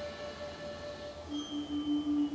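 Quiet passage of band music being conducted: long held notes, a higher note dying away past the middle as a lower note comes in with a slight pulse.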